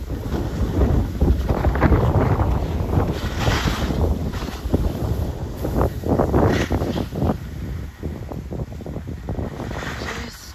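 Wind buffeting the microphone of a skier moving downhill, mixed with the rushing scrape of skis sliding and carving on packed snow, swelling and easing through the turns.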